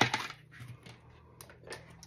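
Pages of a disc-bound planner being turned and laid flat on a desk. There is a sharp click right at the start, then a few lighter clicks and taps near the end.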